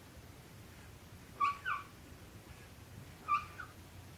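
Dry-erase marker squeaking on a whiteboard as symbols are written: two pairs of short, high squeaks about two seconds apart.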